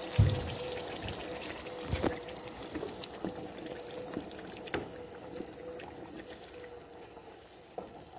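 Dried-chile sauce being poured into a brim-full pan of beef bones and stirred with a spatula. The liquid slops and trickles, fading over the seconds, with a few light knocks of the spatula against the pan and a faint steady hum underneath.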